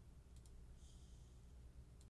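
Near silence: faint room tone with a low hum, and a faint mouse click about a third of a second in.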